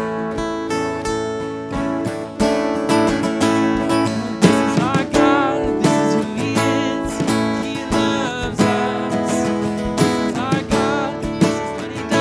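Worship band music led by a strummed acoustic guitar, with voices singing the song.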